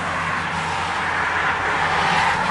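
Steady rushing background noise, growing slightly louder toward the end, over a faint low hum.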